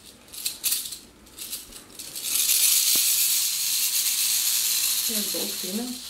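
Mexican west coast rattlesnake rattling its tail: a few short bursts, then a loud continuous buzz from about two seconds in, a defensive rattle while it is held and probed.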